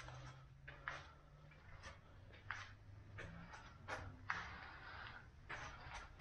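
Quiet workshop with a faint steady low hum and scattered soft clicks and scuffs, irregularly spaced, typical of footsteps and handling noise as someone walks around.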